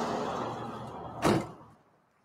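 A car door shutting with a single loud thump about a second and a quarter in, after a steady rushing background noise that fades away.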